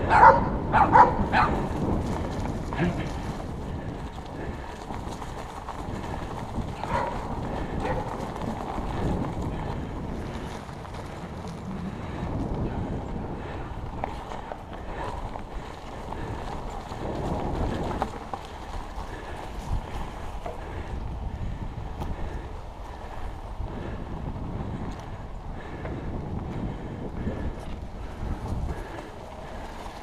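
Trek Stache 5 mountain bike with plus-size tyres rolling over grass and dirt, its tyre rumble mixed with wind on the camera microphone. A dog barks several times in the first second or so.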